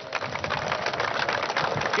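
A crowd clapping: a dense, fast patter of many hands that swells in and holds steady.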